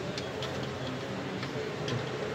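A few faint, irregular clicks over a steady low background hum.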